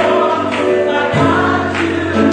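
Live gospel music: a woman sings lead into a microphone over electric guitar, electric bass and keyboard, with a steady bass line and occasional percussion hits.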